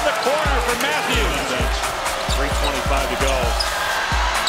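Basketball dribbled on a hardwood court, about two bounces a second, each with a short ringing thud, over the steady noise of an arena crowd.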